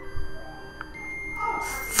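A faint, steady high-pitched electronic beep tone, held through the second half, over low room noise. A breathy hiss comes up just before the end.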